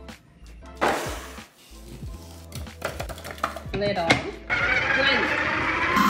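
Background music with a few knocks and the clatter of a glass dish, then about four and a half seconds in a food processor motor starts and runs steadily, churning the frozen coconut-lemon mixture into soft serve.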